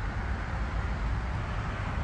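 Steady road traffic noise: an even low rumble with a hiss over it, with no single vehicle standing out.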